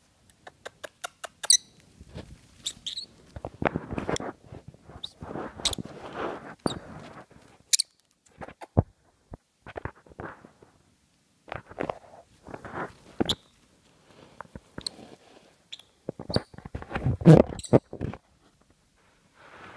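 A small pet parrot scrambling about on and under bed covers: irregular rustling of the fabric with sharp clicks and short high squeaks scattered through. The loudest rustle comes near the end.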